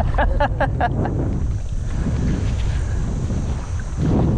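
Strong wind buffeting the microphone, a steady low rush. A few short bursts of laughter sound in the first second.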